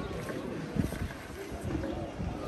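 Indistinct men's voices praying aloud, several overlapping, over a low rumble of wind and handling on the microphone, with a soft low thump about a second in.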